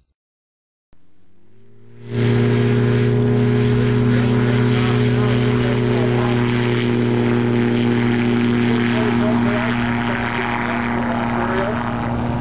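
Kestrel Hawk ultralight's engine and propeller running with a steady, unchanging pitch. It comes in quietly after about a second of silence, rising slightly in pitch, then turns loud about two seconds in and holds steady.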